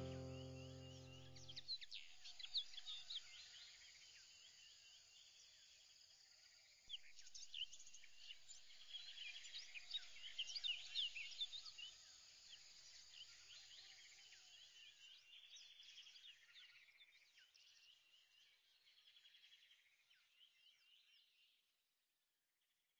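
Faint birdsong of many short, high chirps and whistles. It follows a musical chord that dies away in the first two seconds, grows a little about seven seconds in, and fades out near the end.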